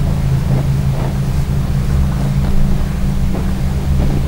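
A loud, steady low hum with a rumbling noise beneath it, unchanging throughout.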